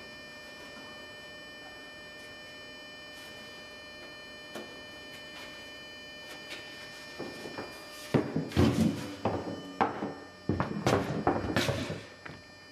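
Faint steady electrical hum with a few light clicks while the umbrella's rib tips are pushed back into place. In the last four seconds there is a run of loud, irregular knocks and rustling handling sounds.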